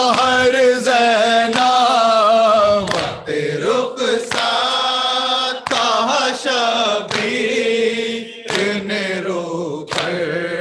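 A group of men chanting a noha, a Shia mourning lament, in unison with no instruments. Rhythmic chest-beating (matam) keeps time about every two-thirds of a second, and the chant breaks briefly between lines.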